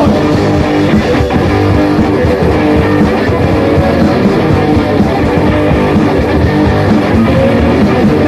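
Punk rock band playing an instrumental stretch of a song, led by electric guitar, with no singing.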